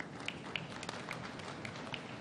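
Audience applauding: a steady patter of many scattered hand claps.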